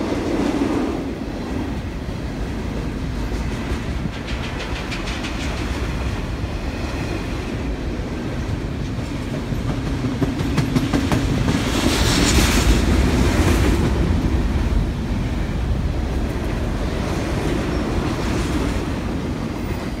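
Canadian Pacific double-stack intermodal freight train rolling past: a steady rumble of wheels on rail with a clickety-clack of wheels clicking over the track. It grows louder and brighter for a few seconds in the middle.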